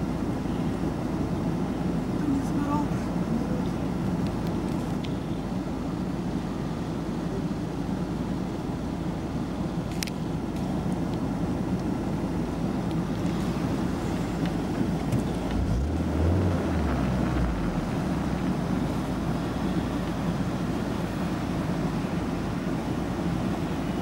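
Steady low rumble of a car engine idling, with a brief deeper hum about two-thirds of the way through.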